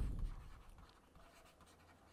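Faint scratching and light ticks of a stylus writing on a tablet.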